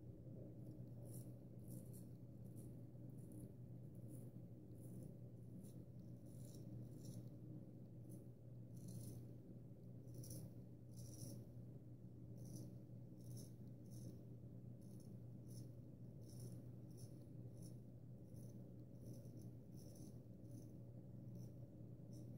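Faint, short scraping strokes of a Gold Dollar 66 half-hollow-ground carbon steel straight razor cutting lathered stubble, drawn sideways across the grain, about one or two strokes a second, over a low steady hum.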